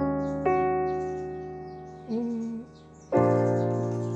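Nord Stage stage piano playing slow, sustained jazz-voiced chords: an E-flat minor seventh chord with an added fourth rings and fades, a short note sounds about two seconds in, then a B-flat 6/9 chord is struck about three seconds in and left to ring.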